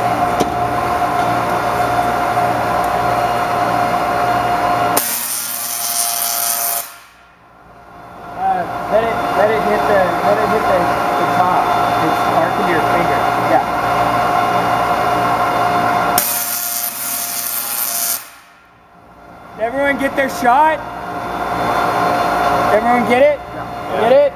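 Large Tesla coil firing its arcs onto a handheld external drive: a loud, steady electrical buzz that cuts out twice for about a second and starts again. Voices call out over it.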